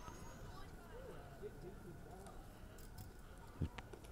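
Faint murmur of distant voices from spectators around the green, with one short soft knock near the end.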